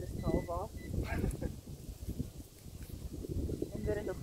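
A dog giving two short, high yelps in quick succession about half a second in.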